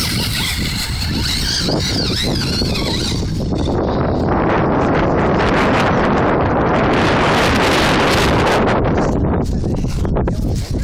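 Wind rumbling on the microphone, swelling to its loudest in the middle. A wavering high whine from the Vaterra Glamis Uno RC buggy's electric motor runs over it for the first few seconds.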